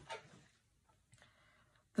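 Near silence: a faint, brief rustle of hands handling a plastic photocard toploader and scissors in the first half second, then room tone.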